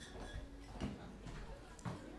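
Quiet room with faint murmur of voices and a few soft knocks, the two clearest about a second apart.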